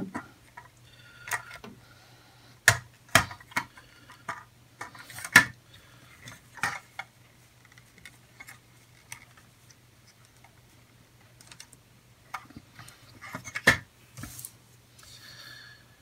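Plastic parts of an Airfix QuickBuild snap-together kit clicking as pieces are pressed and snapped into place, a few sharp separate clicks spread through, the loudest about five seconds in. A faint steady low hum runs underneath.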